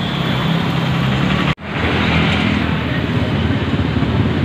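Street traffic: passing motor vehicles and motorbikes running steadily, with a brief sudden cut-out of the sound about one and a half seconds in.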